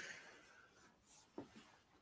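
Near silence: room tone, with a couple of faint brief sounds a little past a second in.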